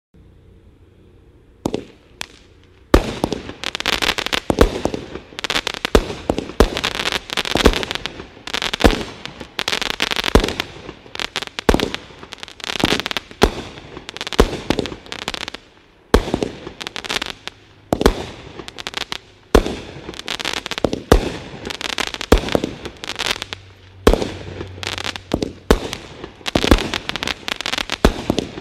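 Black Cat '25 Zombies' 25-shot firework cake firing: a first shot about two seconds in, then a steady run of sharp launch thumps and aerial bursts, a shot or two a second, with crackling between them.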